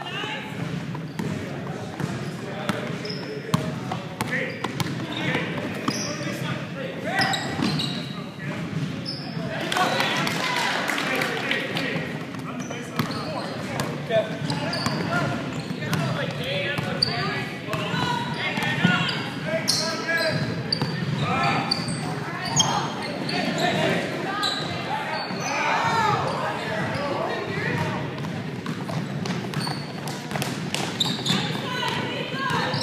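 Basketball dribbled on a hardwood gym floor, its bounces mixed with players' indistinct shouts and voices, echoing in a large gymnasium.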